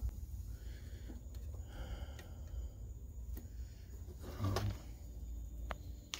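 A few small, sharp clicks of hands working the buttons and plug leads of a solar charge controller, over a low steady hum.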